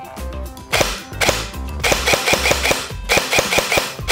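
G&G GC16 Predator airsoft electric gun (version 2 gearbox, ETU electronic trigger) firing on semi-automatic: a quick string of sharp single shots, about four to five a second, starting about three quarters of a second in.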